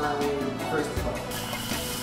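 Background music with a steady, sustained tone, with faint voices underneath.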